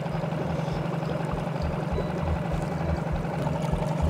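Small boat's motor running steadily at low speed, a constant low hum, with water washing past the hull and an uneven low rumble of wind on the microphone.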